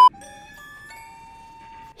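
A brief beep, then a quiet run of bell-like chime notes, each entering a little after the last and ringing on, stopping just before the narration resumes.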